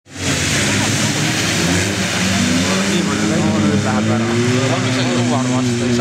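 Rally car engines running hard on a dirt track, their pitch rising slowly, over a steady loud rush of noise. Voices talk over them from about halfway.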